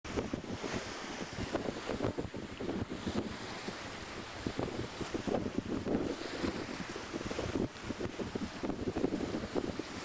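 Wind buffeting the microphone in uneven gusts over the rush of water along the hull of a sailing yacht heeled over and moving fast under sail.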